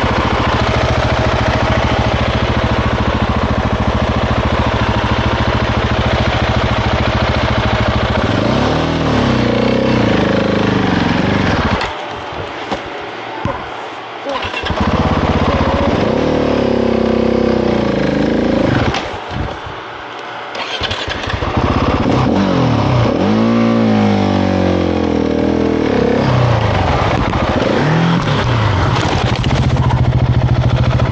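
Husqvarna 701 Enduro's single-cylinder engine idling steadily, then revved in repeated rising and falling bursts. Twice the engine note drops out for a second or two before the revving resumes.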